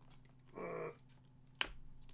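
A man's short hummed "hmm" about half a second in, then one sharp plastic click as a CD jewel case is pulled from a packed shelf.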